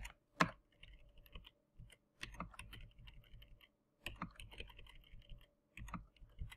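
Faint typing on a computer keyboard: short clusters of keystrokes with brief pauses between them.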